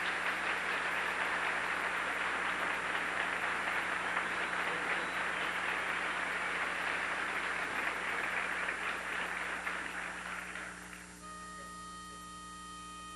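Audience applause after a barbershop chorus song, holding steady and then dying away near the end.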